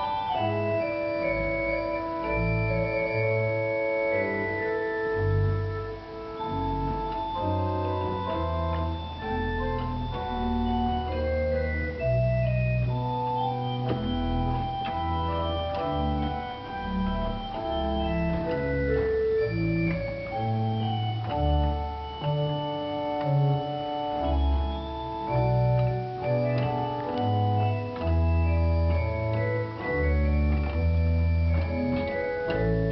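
Church pipe organ being played: held chords and a melody over a pedal bass line that changes note every second or so.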